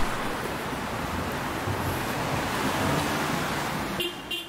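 A steady rushing noise with a low rumble underneath, with no distinct events.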